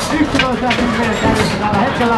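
Excited live race commentary, with scattered sharp clicks.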